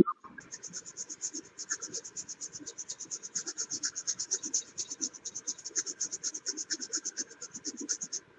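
Rapid back-and-forth scrubbing of a wet, liquid-damaged MacBook Air A1466 logic board, about seven even, scratchy strokes a second, picked up over video-call audio.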